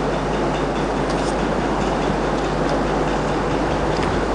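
Steady hiss and rumble of background noise with a low hum running under it, no change through the pause.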